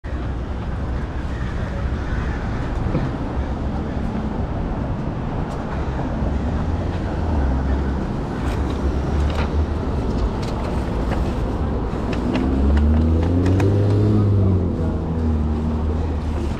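Traffic at a city intersection: steady road noise from passing cars. About 13 seconds in, the loudest sound is a vehicle whose engine pitch rises and falls as it drives past.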